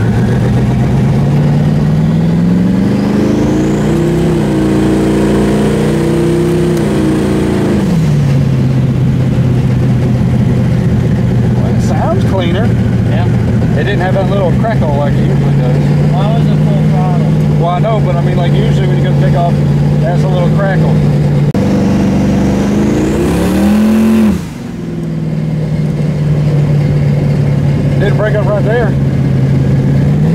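Twin-turbo, carbureted Chevy S10 engine heard from inside the cab under acceleration. The revs climb over the first few seconds with a thin turbo whistle rising alongside, fall at a shift about eight seconds in, then hold steady. The revs climb again with the whistle near the 22-second mark and cut off sharply about 24 seconds in, before settling back to a steady cruise.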